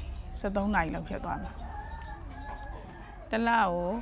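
A rooster crowing faintly, one long drawn-out call in a gap between a woman's words, starting about a second in.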